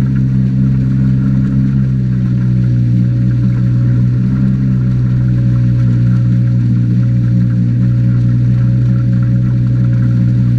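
Outboard motor on a hydrofoil boat running at a steady speed, a constant drone with no change in pitch, under the rush of water past the hull.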